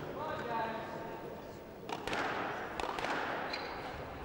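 Squash ball struck by racket and hitting the court walls: a handful of sharp knocks starting about halfway through as a rally gets under way, over faint voices in the hall.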